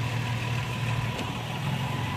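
A vehicle engine idling: a steady low hum.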